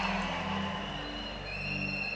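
Soft background music of held keyboard chords, with a high sustained note coming in about a second and a half in, fading slightly.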